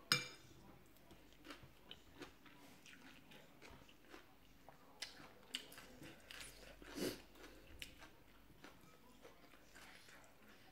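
Close-up eating sounds of rice noodles in curry sauce being chewed, with scattered light clicks of a metal fork and spoon against a glass bowl. The loudest sounds are a sharp one right at the start and a longer one about seven seconds in.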